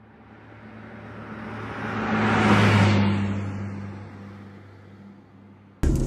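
A car going past: a low engine hum and road noise swell to a peak about halfway through, then fade away.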